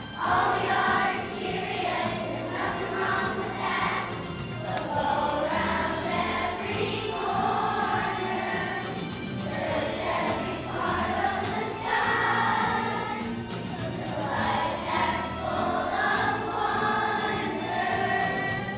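Children's choir of elementary-school students singing a song together in sustained phrases.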